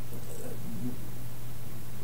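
Steady low electrical hum with faint hiss, the recording's background noise during a pause in the talk.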